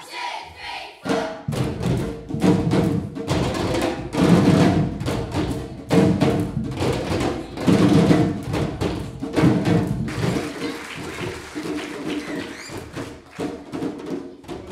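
Group of children playing samba drums: surdo bass drums struck with mallets together with smaller drums in a busy ensemble rhythm. The drumming is fullest in the first ten seconds and thins out after that.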